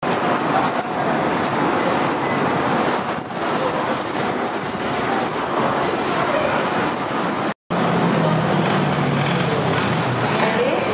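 Steady, dense outdoor noise with no clear tones, cut off to silence for a moment about three-quarters of the way through.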